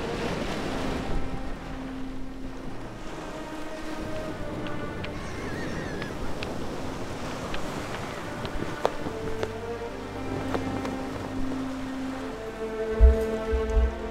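Sea surf breaking and washing over a shingle beach, under soft score music of long held notes. A few low thumps near the end.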